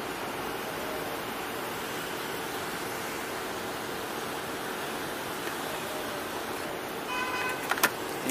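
Steady traffic and road noise heard from a motorbike stopped at a red light, with a low, even hum throughout. Near the end comes a brief pulsing beep, followed by a couple of clicks.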